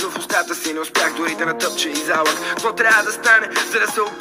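Bulgarian-language rap: a male rapper delivering verses in quick syllables over a hip-hop beat, with almost no deep bass.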